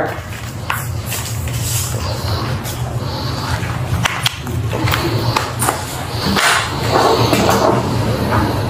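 Handling noise as a wallet and the contents of a purse are gone through: scattered light clicks and rustles over a steady low hum.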